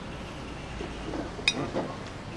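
Low, steady background hum with faint murmured voices and one sharp click about a second and a half in.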